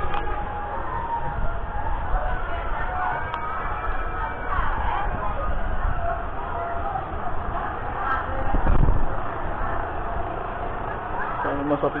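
Indistinct voices of people nearby, with no clear words, over a continuous low rumble on the microphone that swells briefly about nine seconds in.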